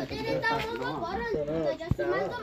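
People talking, with high, child-like voices, and one sharp click shortly before the end.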